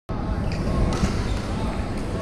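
Echoing badminton-hall din: indistinct voices over a steady low rumble, with a couple of sharp knocks about half a second and a second in.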